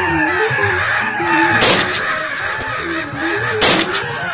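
Two shotgun blasts about two seconds apart, the second louder, over background guitar music.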